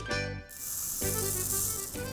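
Dry rice poured from a glass through a plastic funnel into a latex balloon: a steady hiss of grains that starts about half a second in.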